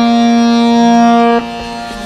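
Bengade harmonium holding a long note, reedy and rich in overtones, with a second, lower note added under it partway through; about one and a half seconds in the playing drops to a much softer level.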